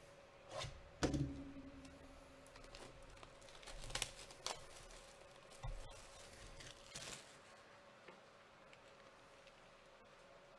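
Cardboard hobby box being handled and opened by hand: a few clicks and taps of cardboard, with a sharper knock about a second in, then soft scrapes and rustles, over a faint steady hum.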